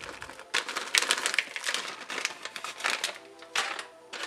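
Dried cranberries shaken out of a plastic bag into a plastic mixing bowl of rolled oats: a run of quick rustles and soft ticks lasting about three seconds.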